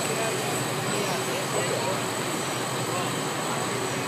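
Fire trucks' engines running steadily at the fireground, an even, continuous mechanical noise with faint voices under it.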